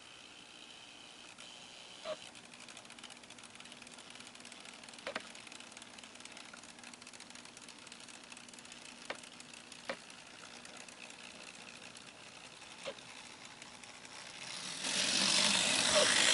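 Faint steady hum and whine of a small N scale locomotive motor turning its driveshaft, with a few light clicks from the drive train. Near the end a loud hiss rises.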